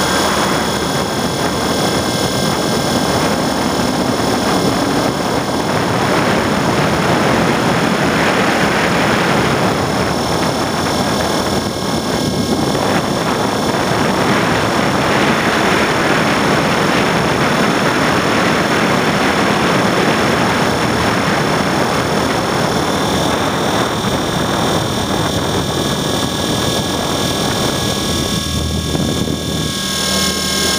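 E-flite Blade 400 electric RC helicopter in flight, heard from a camera mounted on it: a steady high motor and gear whine over the rushing of the rotor blades and wind, dipping briefly near the end.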